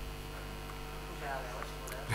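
Steady electrical mains hum in the microphone and sound-system chain, a low buzz with evenly spaced overtones, and a faint, distant voice briefly about a second in.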